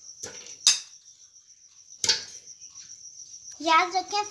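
A cricket trilling steadily on one high note, with three sharp clicks about a quarter second, three quarters of a second and two seconds in, the middle one loudest.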